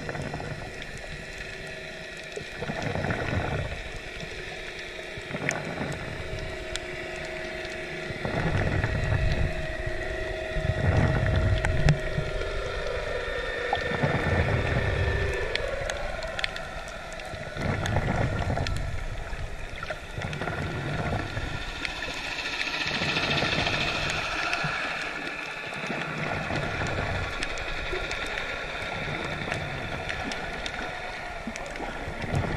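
Underwater sound as picked up by the camera: low water surges every couple of seconds, with a droning hum that shifts and bends in pitch for a while in the middle.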